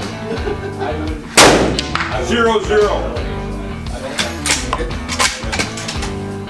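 A single rifle shot about one and a half seconds in, the loudest sound, with a short ringing tail, over steady background music.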